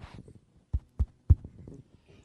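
Three low, sharp thumps about a quarter second apart from a handheld microphone being handled and moved into position.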